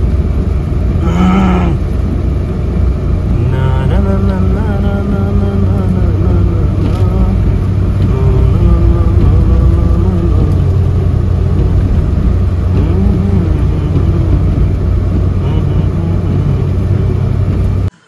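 Car driving on a wet road, heard from inside the cabin: a loud, steady low rumble of road and engine noise, with faint voice-like sounds at times.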